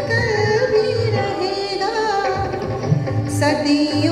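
A woman singing a melody into a microphone with long held and gliding notes, over backing music with a steady drum beat.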